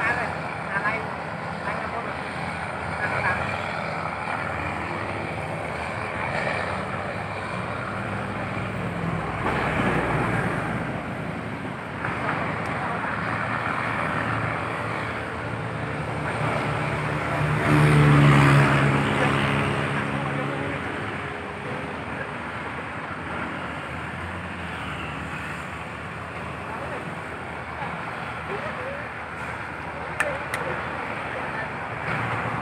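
Steady road traffic on a city bridge. About two-thirds of the way through, one motor vehicle's engine passes close and loud, then fades.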